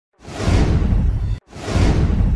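Countdown sound-effect whooshes: a rush with a deep rumble swells up and cuts off suddenly about one and a half seconds in, and a second whoosh starts straight after.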